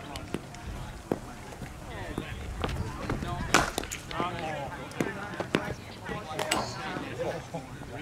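Sharp knocks of a leather cricket ball being bowled and struck in a practice net, the loudest about three and a half and six and a half seconds in, over footfalls of a bowler's run-up and background voices.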